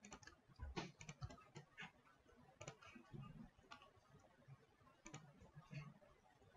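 Faint, irregular clicks of a computer mouse and keyboard, a dozen or so scattered through, several in quick succession about a second in.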